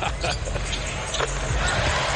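Live basketball game sound in an arena: a steady wash of crowd noise, with a few short thuds of the ball being dribbled on the hardwood court.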